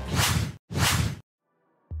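Two quick whoosh transition sound effects back to back, then a short silence and a low hit as the music comes back in near the end.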